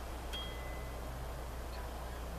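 A faint, brief high ring like a small chime, starting with a light click about a third of a second in and fading within a second, over a steady low hum.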